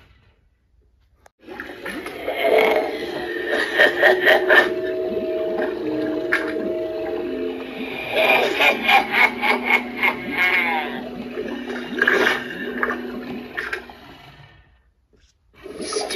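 Spirit Halloween Cauldron Creep animatronic playing its spooky soundtrack through its built-in speaker. Eerie held tones step down in pitch, with watery gurgling and raspy bursts over them. It starts a little over a second in and fades out shortly before the end.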